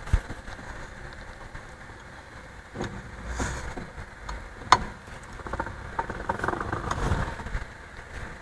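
Ring die of a CPM pellet mill spun by hand: a low uneven metal rumble with scattered clicks and one sharp knock a little past halfway. The rolls catch the die's high spot and turn, then skip, the sign that they are set to skip touch.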